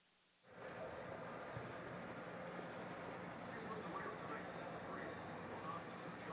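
Near silence, then about half a second in a steady outdoor background noise starts, with faint, indistinct voices in it.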